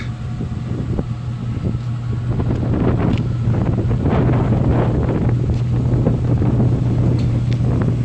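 A steady low engine hum with wind buffeting the microphone, a little louder from about three seconds in.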